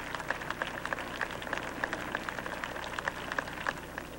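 Irregular crackling clicks, several a second, over a low steady hum.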